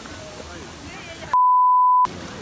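Surf washing at the shore with faint voices, then, about a second and a third in, a loud, steady, high single-pitch beep that lasts under a second and blanks out all other sound: an edited-in censor bleep over a spoken word.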